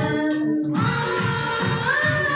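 Women singing a devotional song into microphones, over a steady rhythmic beat. A new held note begins just under a second in.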